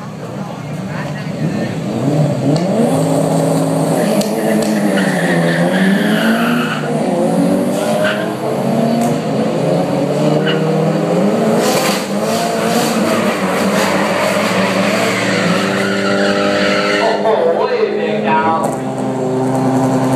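Drag-racing car engines revving, their pitch rising and falling repeatedly, then held at a steadier note near the end.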